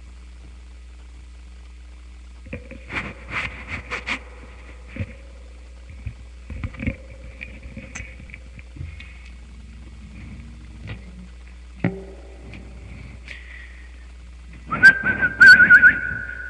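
Scattered clicks and light rustling of handling, then a sustained whistled tone that starts near the end and holds a steady pitch with slight wavering.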